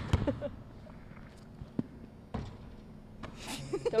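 A basketball bouncing on a gym's hardwood floor: a sharp thump right at the start, then a few scattered, fainter bounces about two seconds in.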